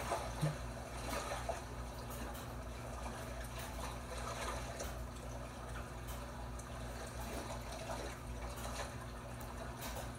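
Soft, steady water sound from a television playing an aquarium-style fish video, with a low steady hum underneath.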